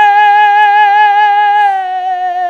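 A man singing one long held high note with vibrato, the pitch dipping slightly near the end.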